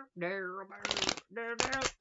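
Tarot cards being shuffled by hand: a quick papery riffle about a second in, and another shorter one near the end.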